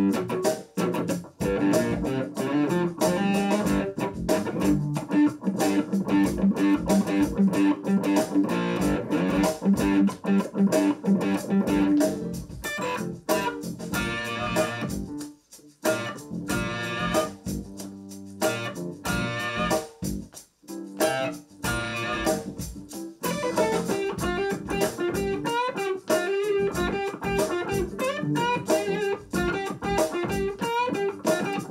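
Electric guitar played through a small Roland Micro Cube practice amplifier with a distorted tone: a stream of quickly picked single notes and short riffs, broken by two brief pauses about 15 and 20 seconds in.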